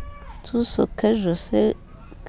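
A woman's voice in short, high-pitched spoken phrases, gliding up and down in pitch, after a brief quiet moment.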